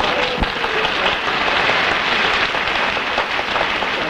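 Studio audience applauding steadily after a panelist's introduction, tapering off near the end.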